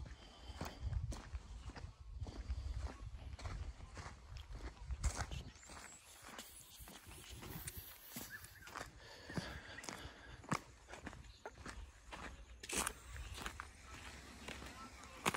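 Footsteps walking on a gravel and leaf-litter track, a run of irregular crunching steps.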